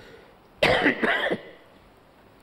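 An elderly man coughs to clear his throat behind his hand, a short rough cough of two or three quick pulses about half a second in.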